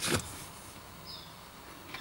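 Quiet inside a car cabin with the engine off: a brief click near the start and a faint short high chirp about a second in.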